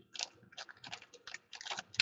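A run of soft, irregular clicks and ticks, about a dozen over two seconds, coming closer together near the end.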